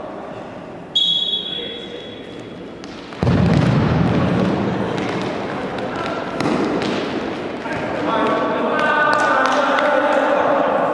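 Referee's whistle, one held blast about a second in, signalling a set-piece restart in a futsal match. Then players shouting across the echoing gym, with thuds of the ball on the hard court.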